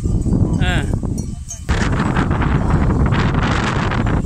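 Wind buffeting the microphone with loud low thumps, and a short wavering animal bleat just over half a second in. From a little under two seconds in, louder rustling and swishing of footsteps walking through tall grass.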